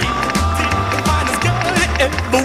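Background music: an upbeat song in an instrumental passage, with a bouncing bass line, regular drum beats and a long held high note.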